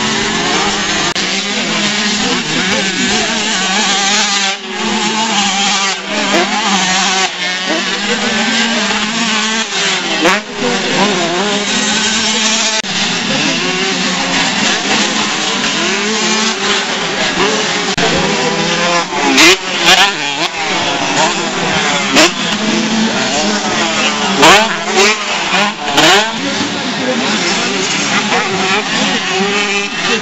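Several 125 cc two-stroke motocross bikes racing on a dirt track, their engines revving up and down over one another as riders accelerate, shift and jump. About two-thirds of the way through, bikes rev hard close by in a series of louder, sharper bursts.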